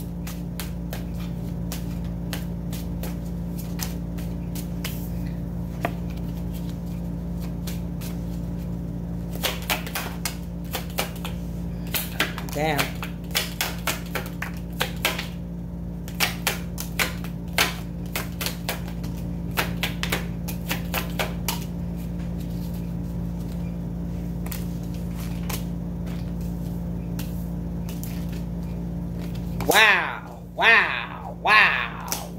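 A deck of oracle cards being shuffled by hand, with clusters of quick sharp card clicks and snaps in the middle of the stretch, over a steady low hum.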